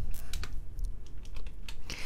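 Computer keyboard being typed on: a short run of separate keystrokes, irregularly spaced.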